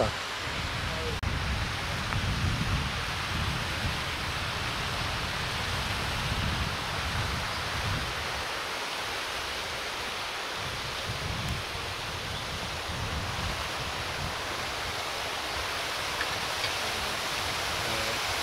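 Steady rushing of water at a canal lock, with wind buffeting the microphone in an uneven low rumble.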